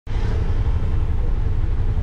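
An auto-rickshaw's small engine running steadily with a deep, low sound, heard from inside the open passenger cabin amid street traffic.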